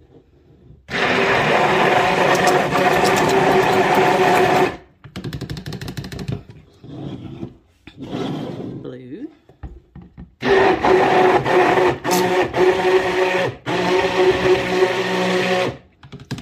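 A stick (immersion) blender runs in two steady bursts, about four and five seconds long, mixing colourant into fluid cold-process soap batter in a plastic pitcher. Between the bursts there are softer knocks and stirring sounds as the blender head is moved in the pitcher.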